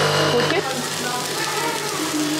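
A capsule coffee machine's pump hums steadily, cutting off about half a second in. Then food sizzles in a frying pan.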